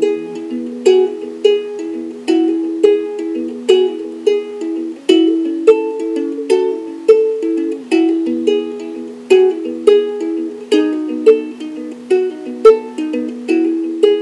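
Kamaka HF-1 standard (soprano) koa ukulele picked solo, a blues melody of single plucked notes over an alternating bass, about two to three notes a second, with no singing.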